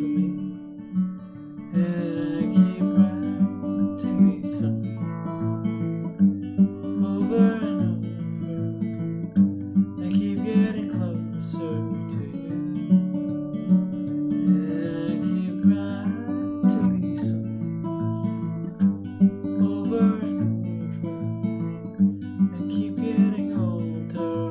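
Acoustic guitar fingerpicked in an instrumental passage: a steady flow of plucked notes and chords, with a sharper accented stroke every couple of seconds.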